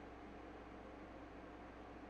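Faint, steady static hiss over a low hum, which the streamer takes to be probably her air conditioner.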